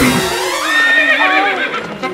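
A woman's high, drawn-out "aahh" that wavers and slides up in pitch, over background music.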